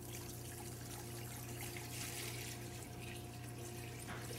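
Water pouring in a steady stream from a plastic measuring jug into a large stainless steel stockpot.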